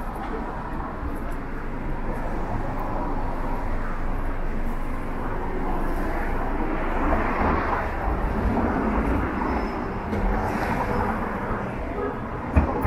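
Busy city street ambience: a steady hum of road traffic with a low rumble, swelling as a vehicle passes about seven seconds in.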